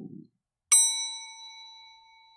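A single bell-like ding, struck sharply and left ringing as it slowly fades.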